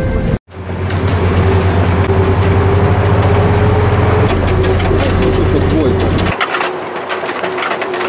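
Armoured vehicle's engine running as it drives, a loud steady low drone with a constant tone over it. Voices are heard over it, and about six seconds in the drone drops away, leaving scattered clicks and knocks.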